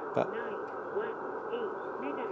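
Icom IC-7300 transceiver's built-in voice announcement speaking the operating frequency and mode, quite low, over a steady receiver hiss.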